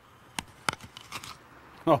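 A crisp apple bitten into with a crunch: two sharp cracks about a third of a second apart, then a few softer chewing crunches.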